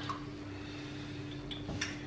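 Quiet kitchen sounds: a steady low hum with a couple of light clicks of glass cups and dishware about one and a half seconds in.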